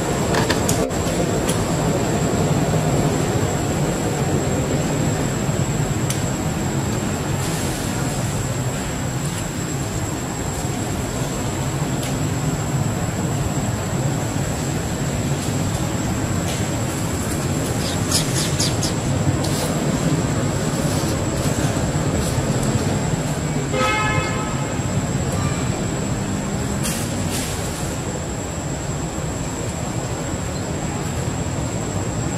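Steady low mechanical rumble, like a running engine, with a constant thin high whine over it. A short pitched call sounds briefly about 24 seconds in.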